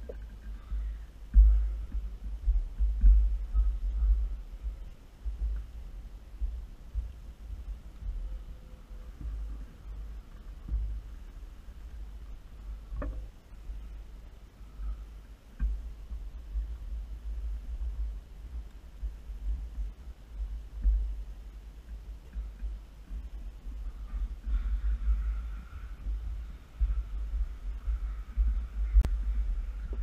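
Irregular low thumping and rumble from hands working right beside the microphone while tying thread and hackle wraps on a fly in a vise, with a sharp click about 13 seconds in and another near the end.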